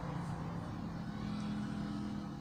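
A steady low background hum with a faint rumble underneath, holding one even tone throughout.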